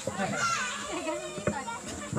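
Voices of a crowd, children among them, talking and calling out over one another, with one sharp knock about one and a half seconds in.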